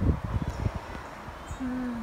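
Irregular low buffeting on the microphone, then, near the end, a short, level hummed "mm" in a woman's voice.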